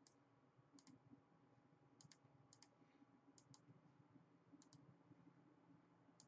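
Near silence with faint clicks from a computer mouse and keyboard: about half a dozen short clicks scattered through, most of them in close pairs.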